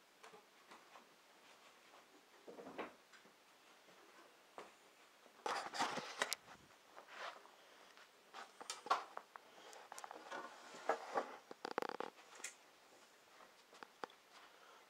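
Handling noise of a camera being picked up and moved: scattered bumps, clicks and rustling, busiest from about five seconds in.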